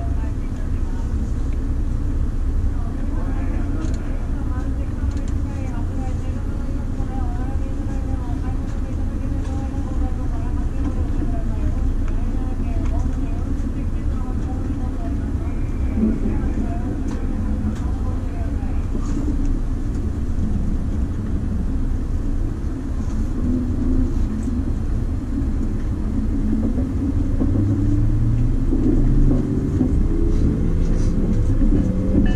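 Steady low rumble inside a standing E257 series train, heard through the car with voices in the first half. Near the end, rising whines start as the train's motors take power and it pulls away from the platform.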